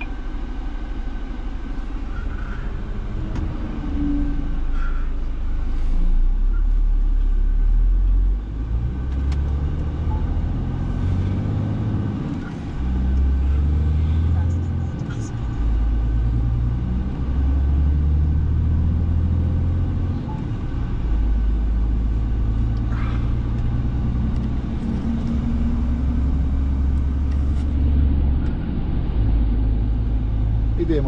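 Lorry's diesel engine and road noise heard inside the cab while driving. A low drone swells and eases every few seconds as the load on the engine changes.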